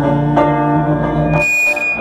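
Live band playing an instrumental passage with no vocals: acoustic guitar and electric bass holding chords. About a second and a half in, the low notes drop away and a brief high hiss with a thin whistling tone comes through.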